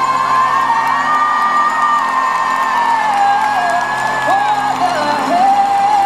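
Live band music in a large hall, loud and continuous, carried by long held notes that slide and step down in pitch, with the crowd whooping and cheering over it.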